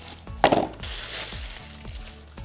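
Plastic bread bag crinkling as it is handled, with a loud crinkle about half a second in, over background music with a beat.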